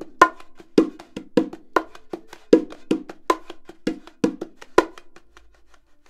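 Bongos played with the hands: a funky groove of louder accented strokes, about two a second, with soft ghost notes filling the spaces between them. The playing stops about five seconds in.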